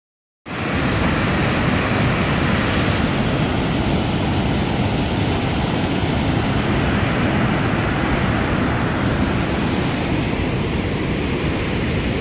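Steady rush of a large waterfall, Tahquamenon Falls, a dense even noise heaviest in the low end, starting about half a second in.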